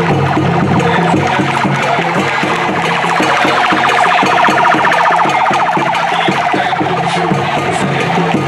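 Drum-led music playing, with a fast-warbling police escort siren rising over it from about two and a half seconds in and fading out near the end.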